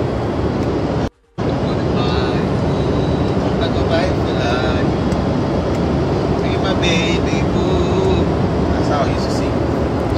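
Steady cabin noise inside a small passenger aircraft: a constant low roar with people talking indistinctly under it. The sound cuts out for a moment about a second in.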